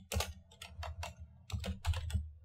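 Computer keyboard being typed on: a quick run of separate keystrokes, with a short pause a little past halfway before a few more.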